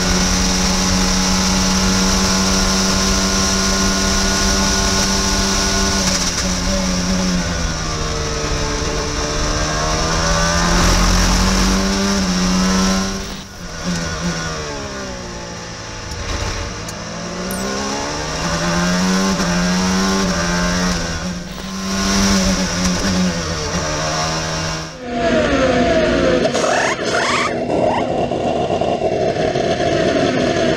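Onboard sound of an IndyCar's Honda 2.2-litre twin-turbo V6 running flat out in top gear. About six seconds in its pitch steps down through a run of downshifts under braking, then climbs again as the car accelerates through the gears, and steps down once more. About five seconds before the end the sound cuts to a pit stop.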